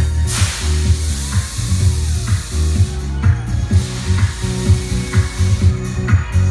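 Loud live pop music through a stage PA system, with a heavy, regular bass beat and a hiss over the top during the first half.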